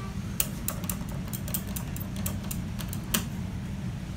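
A rapid, irregular run of light clicks from the elevator car's equipment, with a sharper click near the start and another near the end, over a steady low hum in the car.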